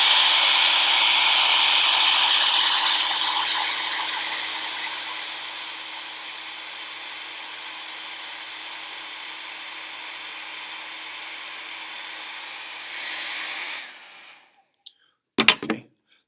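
Handheld hair dryer running, a steady rushing hiss with a low hum, blowing a ping pong ball aloft in its air stream. It is loudest at first and drops over the first several seconds, rises briefly near the end and then cuts off suddenly, followed by a couple of clicks.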